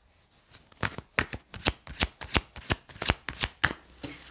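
A deck of tarot cards being shuffled by hand: a quick run of crisp card slaps, about five a second, starting about half a second in.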